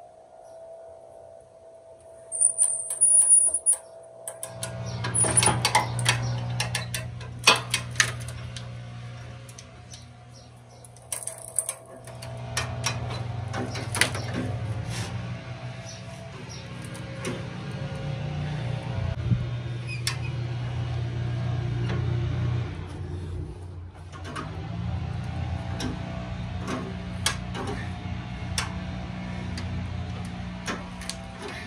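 Hand-cranked come-along (cable ratchet puller) clicking irregularly as its handle is worked to tension the cable, with a louder clatter about three seconds in, over background music.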